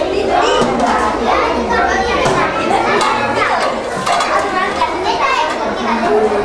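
Many children talking and calling out at once in a busy classroom, with a few sharp clinks of metal lunch dishes.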